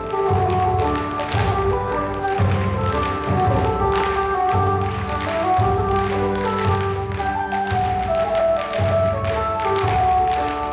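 Irish dance music with a steady beat, overlaid with the rapid tapping of a troupe's Irish dance shoes striking the stage in rhythm.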